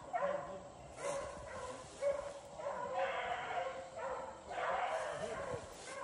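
A pack of beagles baying on a rabbit's trail: drawn-out hound bawls, faint and overlapping, about one a second as the dogs run the chase.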